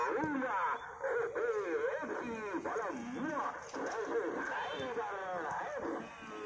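A voice singing a melody with a constantly wavering, bending pitch, heard as music playing throughout.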